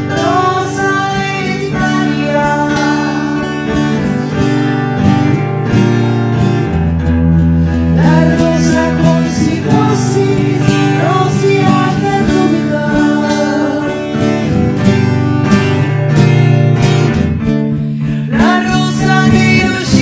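A woman singing with a strummed acoustic guitar accompanying her, performed live.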